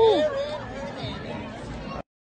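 Several voices shouting and whooping in reaction to a hit, loudest right at the start, then trailing off into scattered chatter.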